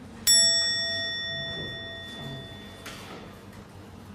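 A single bell-like ding, struck once, that rings out and fades away over about two and a half seconds, followed by a short hiss near the end.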